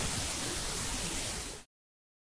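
A burst of static-like hiss that holds steady, tapers slightly, and cuts off abruptly about a second and a half in, leaving dead silence.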